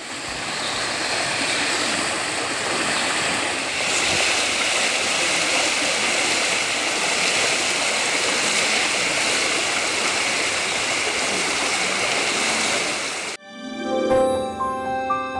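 Steady rush of a swollen, fast-flowing river in flood. It cuts off abruptly near the end, and a short musical sting begins.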